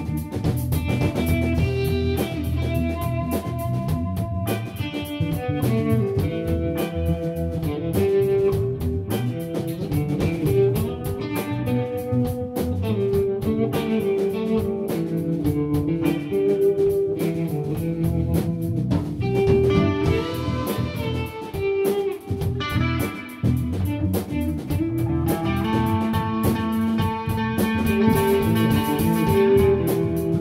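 Live instrumental rock jam: electric guitars playing over bass guitar and a drum kit.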